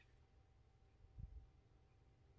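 Near silence: faint room tone with one soft, low thump just over a second in.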